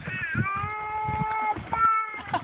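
A baby's long, high-pitched held vocal call lasting about a second, followed by a shorter second call near the end.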